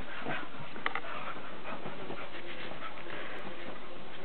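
English springer spaniel panting as she scrambles and rubs herself over a comforter and bedspread after a bath, with the bedding rustling and scuffing throughout. A short high note about a second in.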